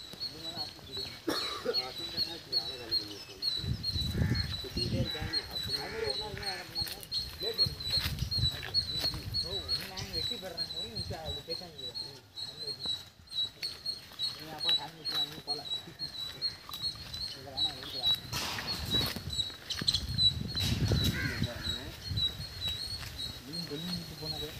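Indistinct voices in the background, with a high-pitched chirp repeating rapidly and steadily throughout.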